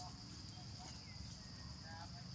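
Faint, steady high-pitched drone of insects, with a low background rumble beneath.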